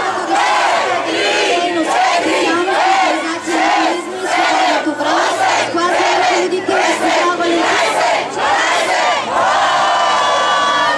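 A large crowd of young people shouting and chanting together, many voices pulsing in a rhythm of about two shouts a second.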